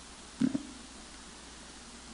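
A pause in a man's talk: quiet room tone with one brief low vocal sound from him about half a second in.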